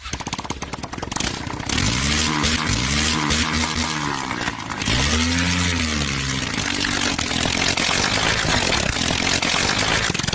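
Small engine of a homemade vehicle built around a large spoked tractor-tyre wheel, running on the move. Its pitch rises and falls a few times in the middle, then it runs steadily.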